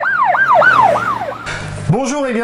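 Electronic sound effect of about four quick, siren-like falling pitch sweeps in a row, fading out; a brief low hum follows near the end.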